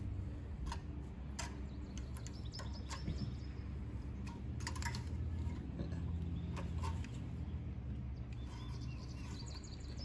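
Scattered small metal clicks and taps of needle-nose pliers working on a Honda GX200 carburetor's throttle linkage, over a steady low rumble with a few faint bird chirps.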